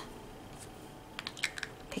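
Small plastic cosmetic jar handled and its lid put back on: a quick run of faint clicks and taps starting about a second in.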